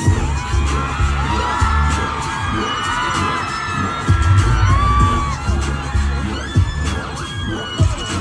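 Loud live pop music over a concert PA with a heavy, pulsing bass beat, and a crowd of fans screaming and cheering over it.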